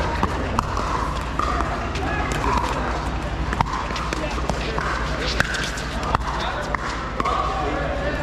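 Pickleball rally: a series of sharp pops from paddles striking the plastic ball, about one a second, over background chatter.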